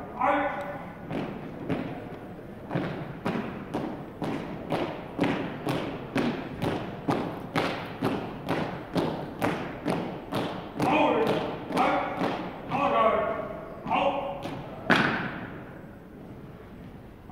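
Color guard boots striking a hardwood gym floor in a steady marching cadence, about two footfalls a second. Near the end come several drawn-out shouted drill commands and one sharp, loud stomp.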